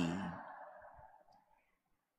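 The last word of a man's speech rings on in a cathedral's reverberation and fades away over about a second. Near silence follows: a pause in a homily.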